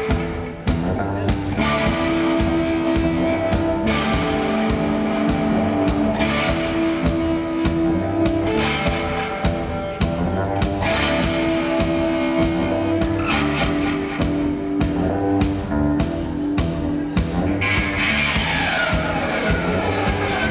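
Punk band playing live, an instrumental passage on electric guitar, bass guitar and drums with a steady beat and sustained guitar chords. Falling guitar slides come near the end.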